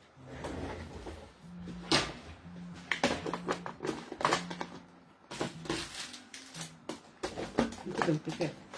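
Irregular clicks, knocks and rustling as objects are moved and put away on a desk, with the loudest knock about two seconds in and a denser run of clicks in the second half. Soft background music plays steadily underneath.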